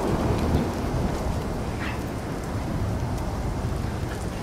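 Wind buffeting the microphone: an uneven low rumble under a steady hiss. A brief faint high-pitched sound comes about two seconds in.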